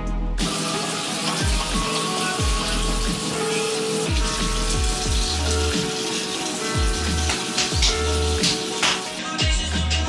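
Hip-hop backing music with deep sliding bass notes, over a bathroom sink tap running steadily; the water starts just after the beginning and stops near the end.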